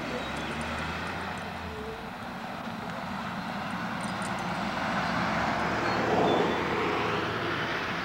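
Pickup truck driving past on a paved road: its engine and tyre noise swell to the loudest point about six seconds in, then fade as it drives away.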